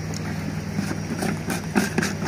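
A clear plastic bottle being handled and its screw cap fitted, giving a few short plastic crackles and clicks in the second half. Under it runs a steady low hum like an idling engine.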